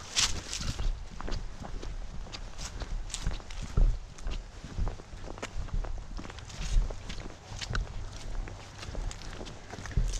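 Footsteps of a person walking at an irregular pace over a muddy, leaf-strewn woodland trail, each step a low thump with a crisp rustle and crunch of dry leaves and brush.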